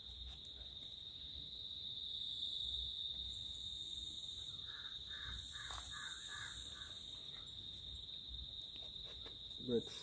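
A steady insect chorus trilling at one high, unbroken pitch, typical of crickets, with a man's voice coming in near the end.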